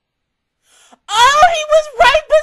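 A loud, high-pitched voice crying out in long cries whose pitch slides up and down, starting about a second in after a moment of silence.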